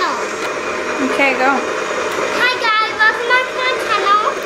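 A young girl's high voice in short vocal sounds, twice, over a steady whirring background noise.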